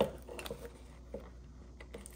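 Faint rustling of a paper sticker pack being handled and pried open, with a few small soft clicks.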